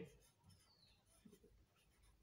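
Near silence, with faint strokes of a marker pen writing on a white board.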